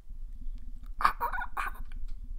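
A man laughing: low, pulsed chuckling at first, breaking into a string of louder, separate bursts of laughter about a second in.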